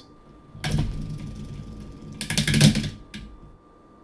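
LEGO Technic transmission worked by hand: plastic gears and ratchet pawls clicking and rattling, rising to a fast run of clicks about two seconds in and stopping shortly after. This is the ratchet noise that the mechanism makes while the spindle turns slowly in the transition phase.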